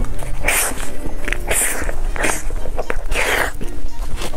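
Close-miked eating sounds: a bite into a soft purple-rice cake, then chewing in several short, wet bursts, over quiet background music.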